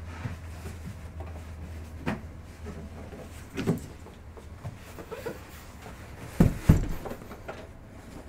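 Handling thumps of a cardboard mystery box being fetched and set down on a table: a few light knocks, then a loud low double thump near the end as the box lands.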